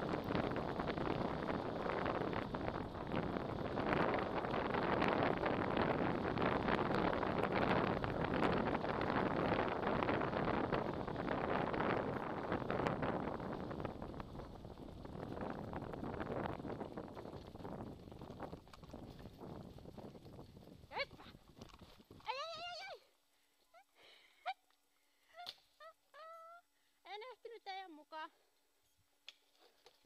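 Steady rush of wind on the microphone and scooter wheels rolling over a leaf-covered dirt trail while the dogs pull, fading over the second half and cutting off abruptly near the end. A series of short, high calls that slide up and down in pitch follows.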